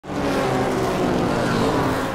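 A race car's engine running at high revs, its pitch easing slightly down toward the end.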